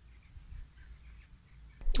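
Quiet pause: a faint steady low hum under light hiss, with a faint brief sound in the first half second.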